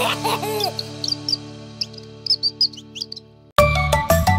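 Cartoon bird chirps, a scatter of short high tweets, over the fading final chord of a children's song. The music stops a little over three seconds in, and a new upbeat tune starts right after.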